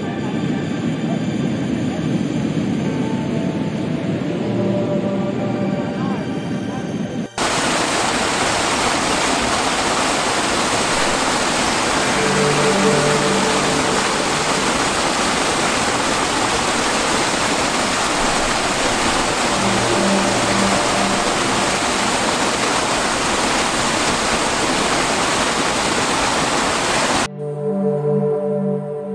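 Soft background music, then about seven seconds in a steady, loud rush of water from a small waterfall cuts in suddenly and covers the music, which carries on faintly beneath. The water sound stops abruptly near the end and the music is heard alone again.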